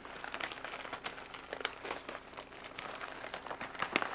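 Plastic and foil packaging crinkling in irregular, soft crackles as a bag of freeze-dried chicken is worked down into a silver Mylar bag.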